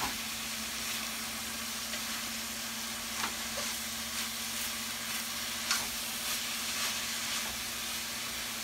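Ground pork sausage and shredded cabbage coleslaw mix sizzling in a wok while being stirred with a wooden spatula, which scrapes and knocks against the pan a few times. A steady low hum runs underneath.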